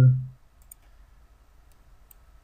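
A few faint computer mouse clicks, about a second apart.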